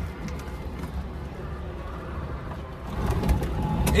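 A Trabant being push-started in reverse: a low rumble from the car rolling, growing louder about three seconds in as its two-stroke engine catches.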